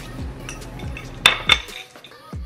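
A fork clinking twice against a plate a little over a second in, two sharp ringing clicks about a quarter second apart, over background music with a steady low beat.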